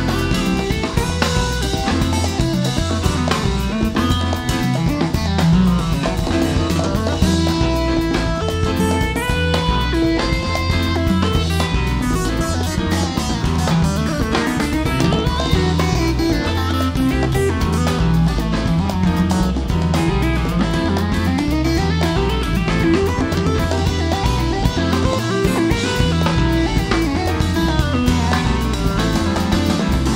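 Live rock band playing an instrumental passage with no singing: electric bass, drum kit and keyboard. The bass line pulses steadily under the whole passage.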